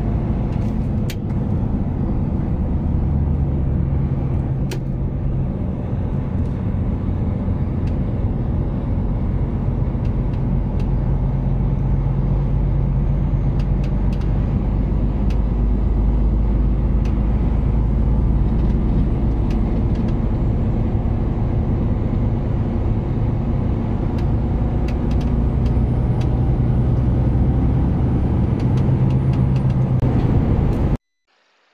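Inside a moving truck's cab: the diesel engine running steadily under road and tyre noise, its low note swelling a little at times, with scattered small clicks and rattles.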